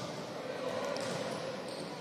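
Sports hall ambience: an even, echoing background din with faint ball bounces on the court floor.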